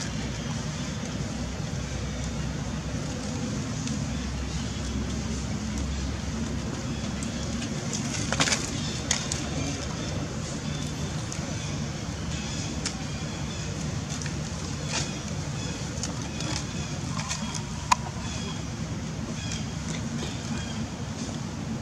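Outdoor background noise: a steady low hum with scattered short clicks and rustles, a sharp click about two seconds before the end.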